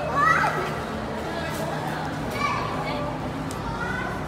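Children's voices calling out and chattering, with a burst of high-pitched shouts right at the start.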